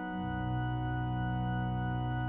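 Church organ holding a sustained chord, the notes steady with no change in pitch; a strong low bass note comes in a moment after the start and the sound gets slightly louder.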